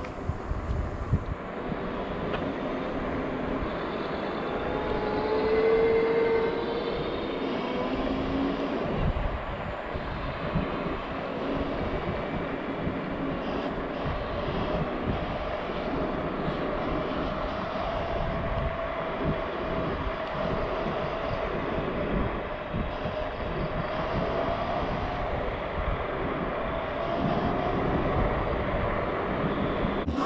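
Electric scooter riding along a road: steady wind buffeting on the chest-mounted microphone and tyre rumble, with a faint motor whine that rises and falls in pitch as the speed changes.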